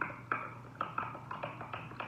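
Quick, irregular light taps and clicks on a glass carafe, about four a second, each with a short ring, as something is worked into the carafe's neck.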